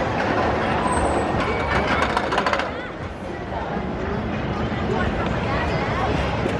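Corkscrew steel roller coaster train running along its track, with a burst of clattering about one and a half to two and a half seconds in, heard over the voices of people around.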